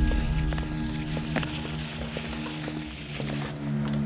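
Background film score of sustained low droning chords.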